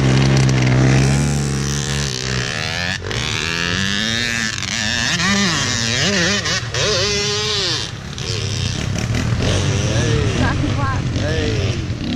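Honda CR85 two-stroke dirt bike idling close by, then revving and pulling away about two seconds in, its engine pitch rising and falling repeatedly as it goes.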